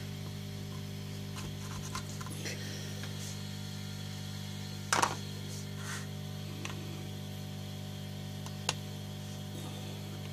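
A hand tool levering at the metal case of a Siemens 5WK9 engine control unit, giving a few small clicks and then a sharp crack about halfway through and another sharp click near the end. A steady electrical hum runs underneath.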